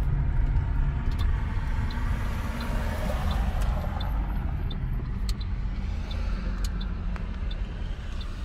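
Road and engine noise inside a moving car's cabin: a steady low rumble with tyre hiss. A faint, evenly spaced ticking runs for a few seconds in the middle.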